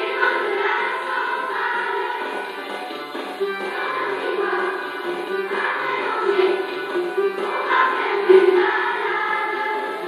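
A large children's choir singing continuously.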